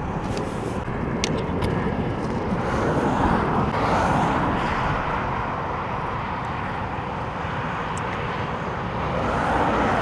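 Motorway traffic passing, the noise swelling up and fading away about three to four seconds in and again near the end, over a steady rumble.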